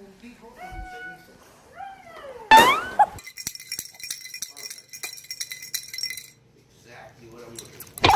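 A baby babbling, with a loud squeal about two and a half seconds in. Next comes about three seconds of high tinkling and clinking from a baby toy, then more faint babbling.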